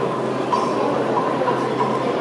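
Steady exhibition-hall ambience: a constant low hum under dense, indistinct background noise of the crowded hall, with a faint tone coming and going.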